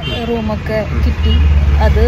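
A woman talking, heard inside a car cabin over the car's low engine and road rumble. The rumble grows stronger about halfway through.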